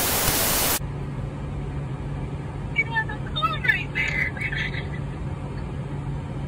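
A loud burst of TV-static white noise used as a transition effect, cutting off abruptly under a second in. After it comes the steady low hum and rumble of a car's cabin.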